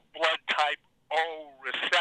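Speech only: a person talking in short phrases, with the narrow sound of a telephone line.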